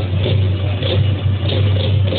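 Loud, steady din of a baseball stadium crowd with cheering music, heard through a phone's microphone with a heavy low rumble.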